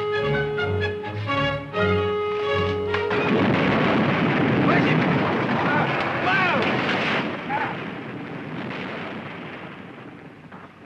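Orchestral film music breaks off about three seconds in. A dirt bank then caves into a dug pit with a loud rumble that slowly fades over the following seconds.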